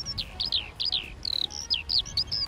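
A bird chirping: a run of quick, clear whistled notes, each sliding downward, several a second.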